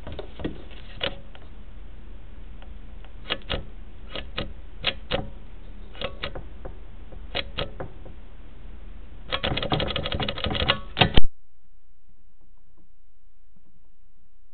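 Irregular clicks and knocks over a steady hum from sewer inspection camera equipment being handled, turning into a quick flurry of clicks near the end. It ends with one loud knock, after which the sound cuts off suddenly.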